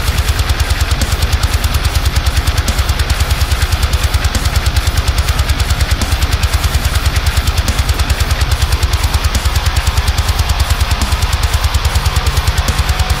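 Heavy metal mix: an eight-string electric guitar tuned to drop F, played through a Neural DSP high-gain amp plugin, chugging fast low notes locked to drums in a rapid, even, machine-like rhythm.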